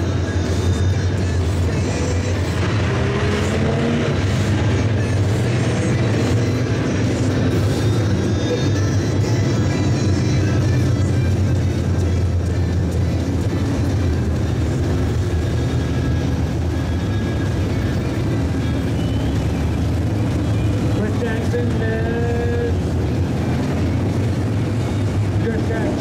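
A pack of dirt-track B-Modified race cars running around the oval with a steady engine drone, and music playing over the track's loudspeakers.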